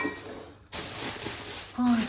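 Thin plastic carrier bag rustling and crinkling for about a second as it is pulled open and the groceries inside are handled.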